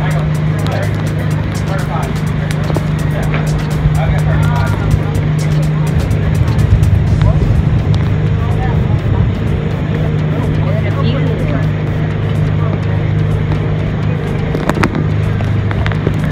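Boat engine running steadily under way, a constant low drone, with faint voices talking over it.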